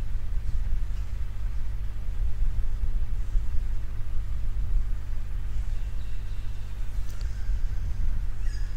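Steady low hum and rumble with a few constant tones.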